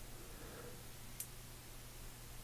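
Quiet room tone with a low steady hum and a single faint click a little past halfway.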